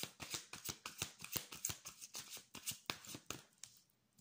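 A deck of cards being shuffled by hand: a quick, irregular run of soft card flicks and slaps that stops shortly before the end.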